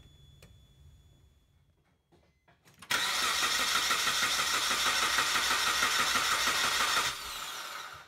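Car engine cranked over by its starter motor for about four seconds in a relative compression test, with a pulsing rhythm from the compression strokes. The sound drops to a quieter level for the last second.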